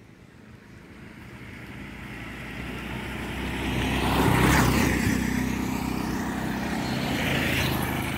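Auto-rickshaw engine drawing closer and passing close by, loudest a little past halfway, after which a steady engine sound carries on.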